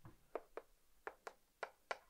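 Chalk writing a number on a chalkboard: about six faint, short taps as the chalk strikes the board stroke by stroke.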